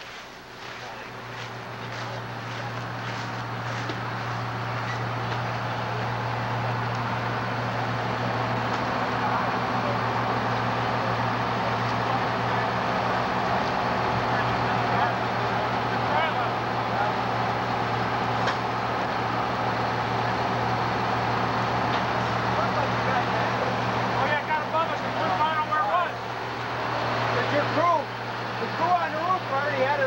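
Fire engine running steadily, pumping water to hose lines: a constant engine drone with a low hum that grows louder over the first several seconds, then holds. Voices come in near the end.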